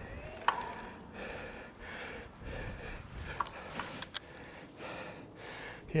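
Quiet rustling and a few sharp clicks from a mountain bike being stopped and laid down in dry grass.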